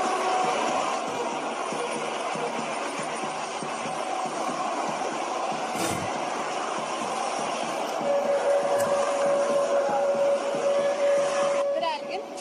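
Steady city street noise, the rush of passing traffic, with a single sharp click about halfway through and a steady held tone over the last four seconds.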